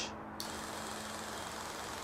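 Viper Mini DTG pretreatment machine spraying pretreat solution onto a shirt: a steady spray hiss that comes on about half a second in, over a low steady hum.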